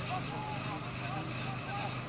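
Open-air ambience at a football pitch: a steady low hum under faint, distant voices calling.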